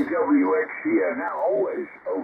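Amateur radio operator's voice on 40-metre lower sideband, received by an original RTL-SDR.com dongle: thin, narrow single-sideband speech with nothing above the mid treble, over a faint hiss. IF noise reduction is switched on.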